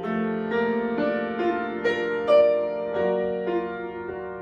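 Solo grand piano playing held chords with a melody moving over them, a new note or chord sounding about every half second.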